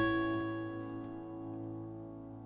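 The song's last acoustic guitar chord ringing out and fading away steadily, with no new notes.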